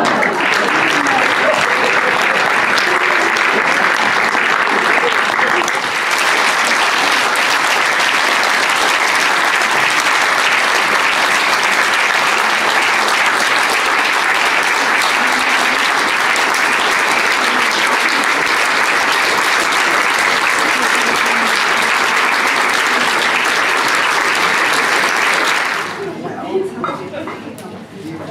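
A cinema audience applauding, steady and unbroken.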